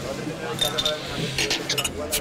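Bar background of indistinct voices, with a few light clicks near the end.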